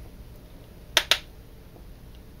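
Two sharp clicks in quick succession about a second in, the sound of makeup tools, such as a brush or an eyeshadow palette, knocking together while the brush is reloaded with powder shadow.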